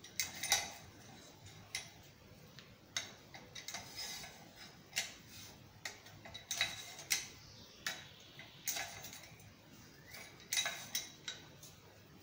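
Irregular light metallic taps, roughly one a second, some leaving a short ring: a hammer tapping a thin 18-gauge sheet-metal band as it is bent around a form held in the vise.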